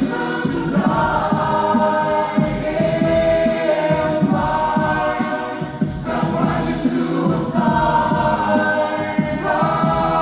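Mixed a cappella choir singing through microphones and a PA: sustained chords over a rhythmic low pulse. About six seconds in come three sharp claps.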